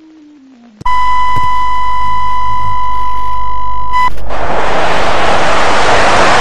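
A TV broadcast test tone: a loud, steady electronic beep with a low hum under it. It starts suddenly about a second in and lasts about three seconds. It then switches straight to loud TV static hiss, which cuts off suddenly. The signal interruption is staged as a broadcast hijack.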